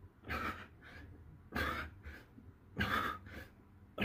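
A man breathing hard in rhythm with push-ups: a forceful breath about every 1.3 seconds, one per rep, each followed by a shorter, softer breath.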